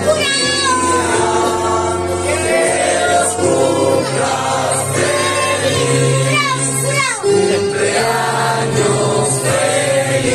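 A group of people singing a birthday song together over a steady musical backing.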